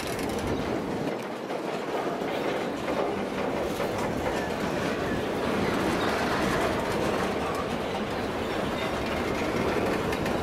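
Container wagons of a long freight train rolling past at steady speed, a continuous sound of steel wheels running on the rails.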